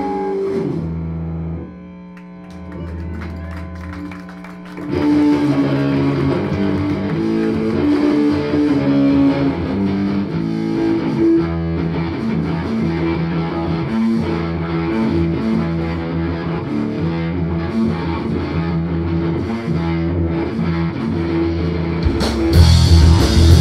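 Live rock band of electric guitar, bass guitar and drums. A loud passage breaks off into a quieter stretch with held bass notes, and about five seconds in an electric guitar riff with bass starts up and carries on steadily.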